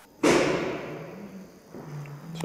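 A single sudden thump that fades out over about a second and a half.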